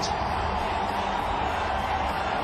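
Large stadium crowd cheering, a steady, even wash of many voices.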